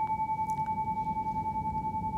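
A singing bowl's sustained ring: one steady mid-pitched tone with a faint higher overtone, wavering in loudness with an even pulse several times a second.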